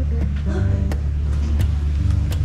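Steady low drone of the tour boat's Hino diesel engine running, heard from just outside its engine compartment.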